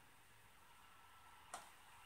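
Near silence: room tone, with a single faint click about one and a half seconds in as a razor blade is set in place under a microscope.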